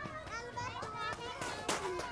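Several young children's voices chattering and calling out over one another while playing, with a sharp click about three-quarters of the way through.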